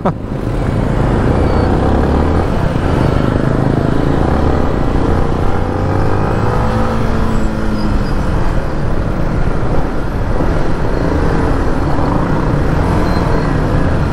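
Motorcycle engine running under way with traffic noise around it, its pitch rising and falling about halfway through as the bike speeds up on clearer road.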